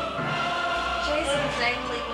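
Title theme music sung by a choir of voices: held notes, with some notes sliding in pitch in the second half.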